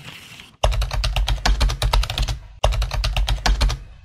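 Computer keyboard typing sound effect: fast, dense key clicks over a low hum, in two runs with a short break about two and a half seconds in. It follows a faint hiss at the start.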